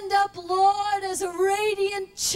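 A woman singing solo into a handheld microphone, holding long, steady notes broken by a few short pauses and small dips in pitch.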